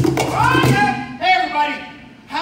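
A cajon rhythm stops on a final hit right at the start, then men's voices call out twice in drawn-out tones.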